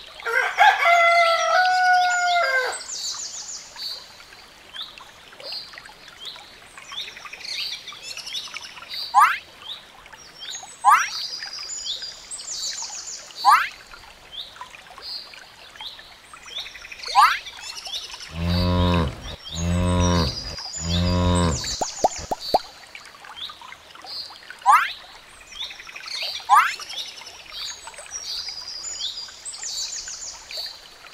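Farmyard sound effects: a rooster crows loudly at the start, over birdsong of short sweeping chirps repeated every second or two. About two-thirds of the way through, cattle low three times in a row, each call about a second long, followed by a few light clicks.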